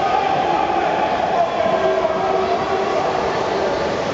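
Steady, echoing din of a water polo game in an indoor pool: water splashing as players jostle in front of the goal, with voices shouting over it.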